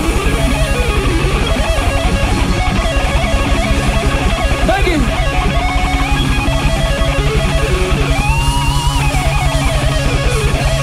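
Live hard rock band playing loud: electric guitar lines that bend in pitch over a fast, driving drum and bass beat.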